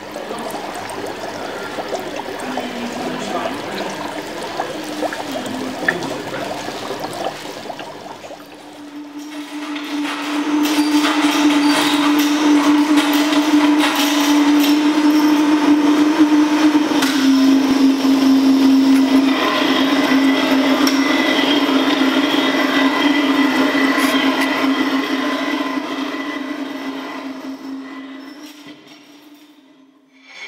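Experimental noise music from homemade oscillators and devices: a noisy, crackling texture over a steady low drone. The drone steps down slightly in pitch midway, the whole swells about ten seconds in, then fades out near the end.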